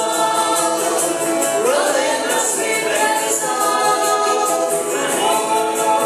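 A live bluegrass band playing: a woman and a man sing together over a picked banjo and a strummed acoustic guitar, with steady, even picking throughout.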